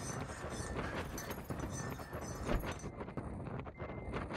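Gusty wind noise during a severe windstorm, with scattered irregular clicks and knocks throughout.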